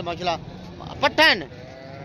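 A goat bleats once, about a second in, a short loud call that falls in pitch.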